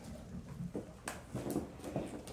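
Kittens scampering and pouncing on a hardwood floor, with several light thumps and knocks in the second half.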